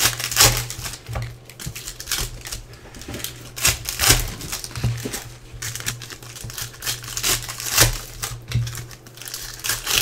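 Foil trading-card pack wrappers being torn open and crinkled by hand, in irregular crackling bursts, loudest about half a second in, around four seconds in and near eight seconds.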